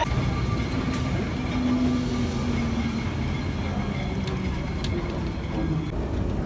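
Vintage wooden Lisbon tram on route 28 in motion, heard from inside the car: a steady low rumble of the wheels on the rails with a faint motor whine.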